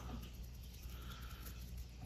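Quiet room tone with a low steady hum and faint small rustles of fingers handling bucktail hair.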